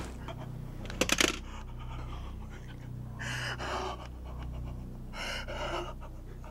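A man panting and gasping in distress, with two heavy breaths about two seconds apart, over a steady low hum. A brief cluster of sharp clicks comes about a second in.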